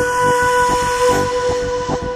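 Intro of a hardstyle electronic track: a held synth tone over a pulsing low beat, with a bright hissing noise layer whose top end drops away about two-thirds of the way through.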